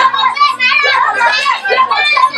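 Several children and a woman crying out at once in loud, overlapping voices, praying aloud with no single words standing out.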